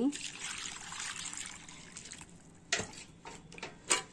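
Water poured from a plastic mug into a hollow in a dry sand-and-cement mix to make mortar, splashing and trickling for about two seconds as it tapers off. Two light knocks follow later.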